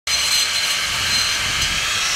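Steady construction-site noise: an even, high hiss with faint whining tones, as of work on a brick and granite facade.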